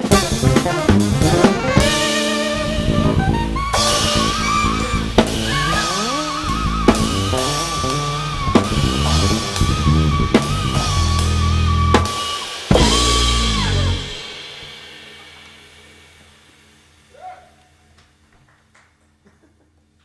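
Live jazz-rock band of two saxophones, drum kit and electric bass playing, with a long held, wavering high note over busy drums and bass. About two-thirds of the way through the band ends the tune on a final hit and the sound dies away to near silence.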